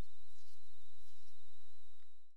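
Steady electrical hum and hiss with a faint high-pitched whine, the background noise of the narration recording, with no distinct events; it begins to fade out near the end.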